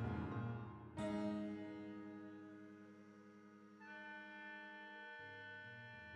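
Contemporary chamber music for oboe, flute, viola and prepared piano. A dense low keyboard texture fades, then a sudden ringing chord about a second in decays slowly. A held higher note enters around the middle.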